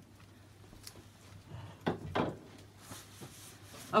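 Soft handling noises with two light knocks about two seconds in, as a small canvas is put aside on a plastic-covered table.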